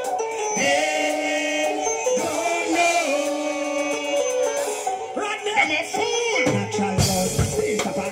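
Live dancehall music through the venue's sound system, with vocals over held melodic notes; heavy bass and a beat come in about seven seconds in.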